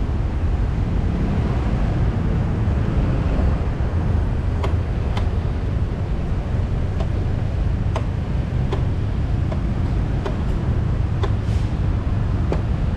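Yamaha Grand Filano Hybrid scooter ridden slowly in traffic: a steady low rumble of the scooter and wind on the microphone. Light clicks come now and then from about halfway in.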